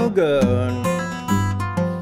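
Acoustic guitar played fingerstyle blues: a steady thumb bass about twice a second under picked treble notes.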